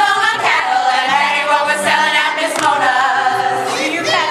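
A chorus of women singing together in a stage musical number, holding long notes.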